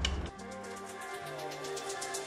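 Electronic background music with steady held notes and a quick, regular ticking beat. It takes over about a third of a second in, when a low rumble cuts off.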